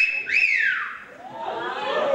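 A two-note wolf whistle: a short note that jumps up and holds high, then a second that rises and glides slowly down. Voices come in about a second and a half in.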